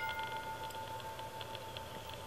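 A chime struck once, ringing on one steady note for nearly three seconds, its higher overtones dying away first. Faint quick ticking sounds above it.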